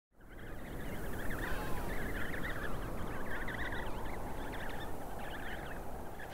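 Outdoor ambience of a penguin colony: many overlapping, warbling calls over a steady rush of wind, fading in from silence at the start.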